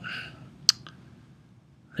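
A computer mouse button clicking: one sharp click about two-thirds of a second in, then a fainter second click just after.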